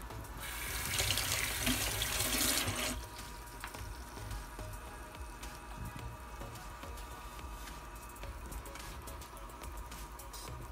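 Water running briefly, a rushing that starts just after the beginning and cuts off abruptly about three seconds in, leaving only a faint steady hum.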